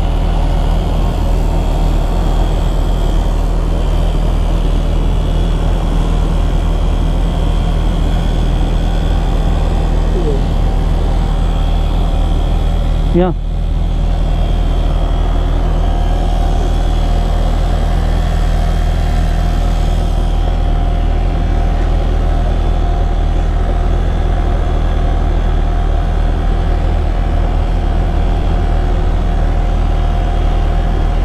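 A small motor or engine running steadily and without a break close by.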